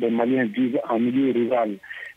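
Speech only: a man talking over a narrow, phone-quality line.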